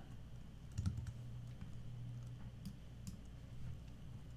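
A few faint, scattered keystrokes and clicks on a computer keyboard and mouse.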